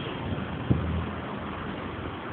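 Steady background noise of a parking garage, with one short thump a little under a second in.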